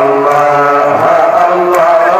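A man chanting Arabic devotional verse in praise of the Prophet into a microphone, in long, wavering held notes without a break.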